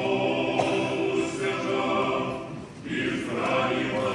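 Church choir singing Orthodox liturgical chant unaccompanied, in long sustained phrases; a short break just before three seconds in, then a new phrase begins.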